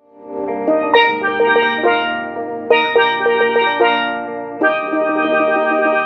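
Steelpan playing a melody of struck, ringing notes with quick rolls, fading in at the start.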